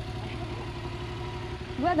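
Yamaha MT-07's parallel-twin engine idling steadily, with a brief voice near the end.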